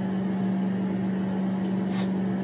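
Bathroom ceiling exhaust fan running with a steady, even hum. Two brief hissy scrapes come near the end.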